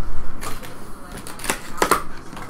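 Cardboard trading-card box being handled and opened: a few short, sharp clicks and crinkles from the cardboard and wrapping, the loudest pair near the end.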